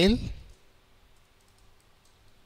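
Faint computer keyboard keystrokes: a few scattered key presses after a spoken word ends about half a second in.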